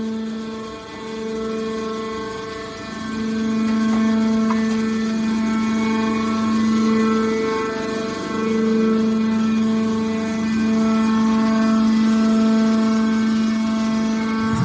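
Hydraulic power unit of a horizontal scrap metal baler running: the electric motor and hydraulic pump give a steady pitched whine that swells and dips a little.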